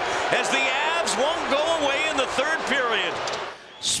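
A man's voice talking, as in broadcast hockey commentary, with a short hiss just before the end after a brief lull.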